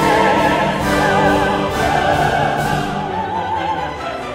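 Bel canto opera: a solo voice holds high notes with a wide, regular vibrato over orchestral accompaniment.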